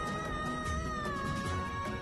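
Background music of a dramatic TV score: long held notes, a higher tone above a lower one, sinking slightly in pitch over a low drone.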